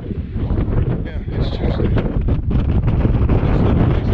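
Wind buffeting the microphone: a loud, continuous low rumble with uneven gusts.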